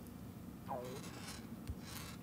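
Faint taps and light rubbing on an iPad touchscreen as an expression is keyed into a graphing calculator's on-screen keypad.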